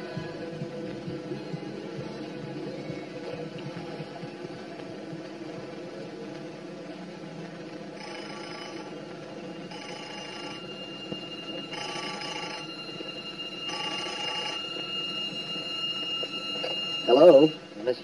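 A desk telephone ringing: four short rings about two seconds apart, starting about eight seconds in, after a low steady background. A man's voice breaks in just before the end.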